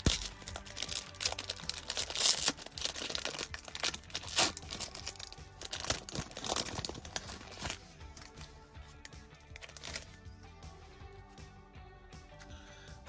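Foil wrapper of a trading card pack being torn open and crinkled by hand, with dense sharp crackles for the first eight seconds or so, then quieter handling, over background music.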